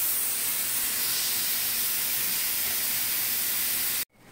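Steam hissing steadily from the leaking pressure regulating valve on a Tuttnauer autoclave's steam line. It is a loud, high-pitched hiss that holds constant.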